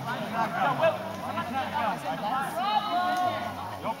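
Several people talking over one another, with one voice drawn out into a long, steady call about three seconds in.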